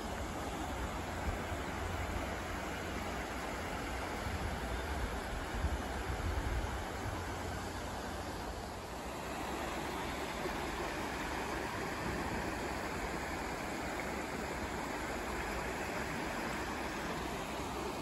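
Shallow river water rushing steadily over rocks and broken concrete slabs, with a low rumble underneath through roughly the first seven seconds.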